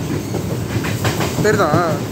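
Steady low rumble and rattle of a moving vehicle, with a voice heard briefly near the end.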